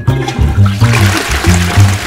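Cartoon toilet-flush sound effect, a rushing swirl of water, over a plucked double bass line of short low notes about four a second. A falling whistle glide trails off at the start.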